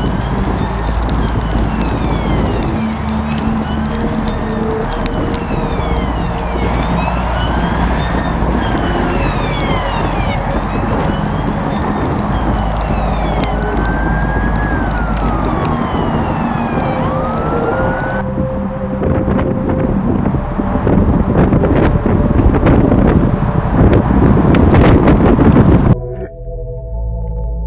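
A dense, loud sound collage of several overlapping emergency sirens wailing up and down over a thick noisy rumble. About two thirds of the way in it turns harsher with crackling and builds louder, then cuts off suddenly at the end.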